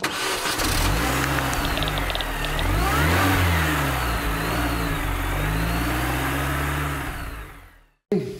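A car engine starting and revving up and down several times, then fading out near the end.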